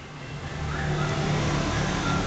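A motor vehicle on the street drawing closer, its engine rumble and road noise growing louder over the first second and then holding steady.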